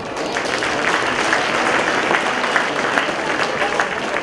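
Crowd applauding, many hands clapping in a dense, steady patter.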